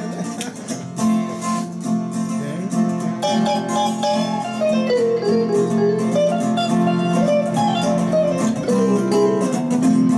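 Two guitars playing an instrumental jam: an acoustic-electric guitar strummed steadily while a second guitar picks a lead melody over it. There is a sharp click at the very start.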